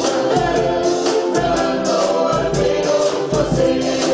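A ukulele ensemble strumming chords in a steady, even rhythm while several voices sing the melody together.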